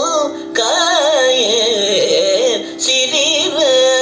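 Male Carnatic vocalist singing a heavily ornamented melodic line, the pitch swinging in wide oscillations (gamakas), over a steady drone; a short breath break about half a second in.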